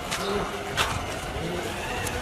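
Outdoor street background noise with faint, distant voices.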